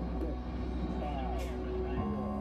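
Rocket launch rumble, deep and steady, with a voice and music over it.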